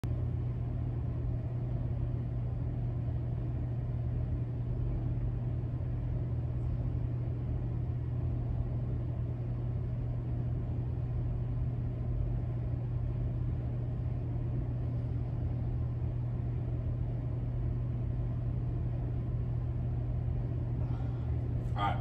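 Steady low hum and rumble of room noise in a gym weight room, unchanging throughout.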